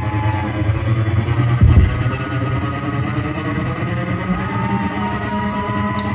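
Live pop-rock band playing the instrumental intro of a song: held chords over a steady low bass, with a note gliding slowly upward near the end.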